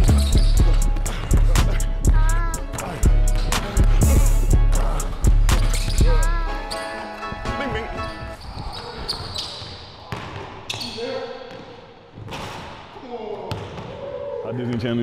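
Music beat with heavy bass and fast hi-hat clicks, over a basketball being dribbled and sneakers squeaking on a hardwood court. The bass drops out about seven seconds in, leaving quieter, scattered knocks.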